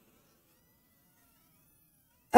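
Near silence: faint room tone in a pause between sentences.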